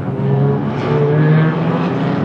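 A pack of four-cylinder compact race cars running together in close formation, their engines rising in pitch about a second in as the field picks up speed toward the start.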